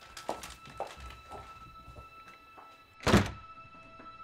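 A few footsteps walking off, then an office door pulled shut with a loud thud about three seconds in. A steady, tense music bed sustains a held tone underneath.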